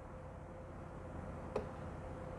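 Quiet room tone with a faint steady hum and one soft click about one and a half seconds in.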